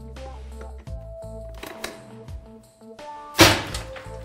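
Background music with a steady beat; about three and a half seconds in, a single loud, sharp shot with a short tail as the impact-test gun fires a hardened-steel chisel-point projectile into ANSI Z87+ industrial safety glasses.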